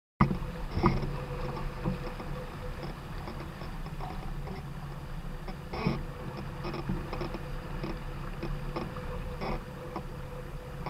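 Water rushing along the hull of a small sailboat under sail, with wind on the microphone and a few sharp knocks from the boat.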